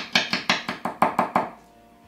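Strat-style electric guitar played through an amplifier, its strings picked rapidly with a pick at about six strokes a second. The picking stops about one and a half seconds in and leaves a note ringing. The guitar is being played to test its tone controls.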